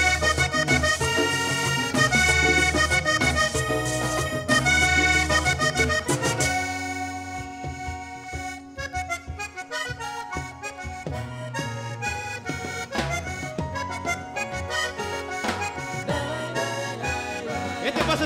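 Vallenato played live on a three-row button accordion with the band. About six seconds in, the bass drops out and the accordion carries on over lighter percussion.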